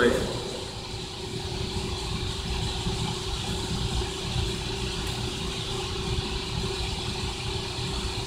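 A steady mechanical hum with one constant mid-low tone running through it, unchanging for the whole stretch.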